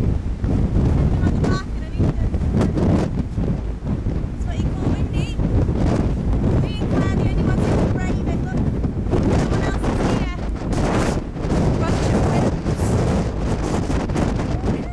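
Wind buffeting the microphone: a loud, steady low rumble with gusts.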